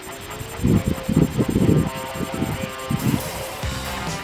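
Background music with a rising tone near the start, held tones and repeated low beats.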